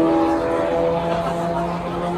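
Turbocharged drag racing car engine idling steadily, its pitch holding level with small shifts.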